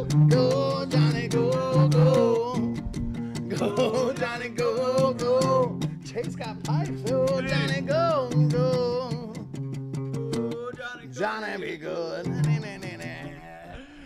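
A three-string toy guitar being picked in a quick rhythm with sustained droning notes, with a wavering voice singing along over it. The playing thins out and gets quieter over the last few seconds.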